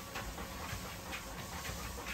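A Presa Canario panting hard with its tongue out, quick breathy huffs repeating a few times a second over the low steady hum of the dog treadmill it is walking on.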